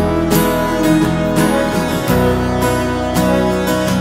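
Live band playing an instrumental passage between sung lines: strummed acoustic guitars over a bass line that changes note a couple of times.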